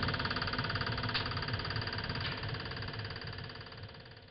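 A steady mechanical running hum, engine-like, growing gradually fainter toward the end. It is not the sound of the heat-powered stove fan.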